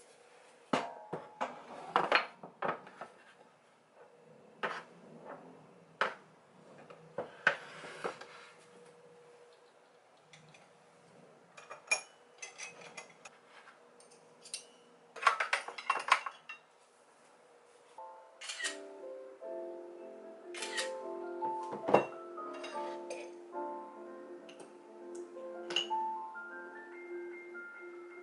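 Small ceramic bowls, a plate and cutlery clinking and knocking as they are handled and set down on a kitchen counter and a wooden tray, in scattered clusters of sharp clinks. About two-thirds of the way in, light background music with a bell-like mallet melody comes in.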